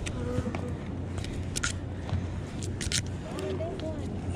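Crab pot line being hauled in hand over hand over a wooden pier rail, with a few short rope swishes over a steady low background rumble, and faint voices.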